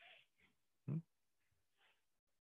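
Near silence with one short, faint grunt-like voice sound, a brief hum or throat noise, about a second in.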